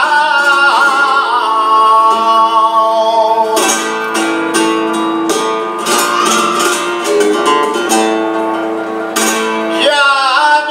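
Male flamenco singer (cante por tientos) holding and ornamenting a long wavering note over flamenco guitar. About three and a half seconds in, the voice drops out and the guitar plays a busy passage of sharp plucked and strummed notes. The voice comes back in at the very end.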